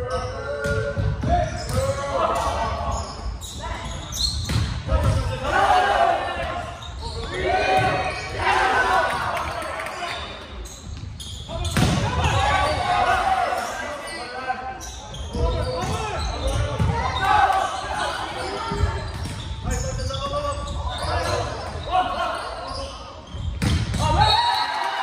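Indoor volleyball rally: the ball being struck and hitting the hardwood floor, with players and spectators shouting throughout, echoing in a large gym. A sharp hit comes near the end.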